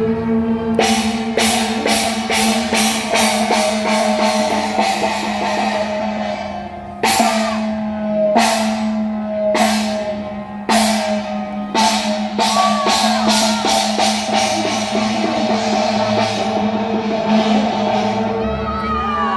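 Chinese procession percussion of gongs, cymbals and drums: a fast run of cymbal and drum strokes, then a series of heavy gong crashes a little over a second apart, each ringing with a falling pitch. A steady held tone sounds underneath.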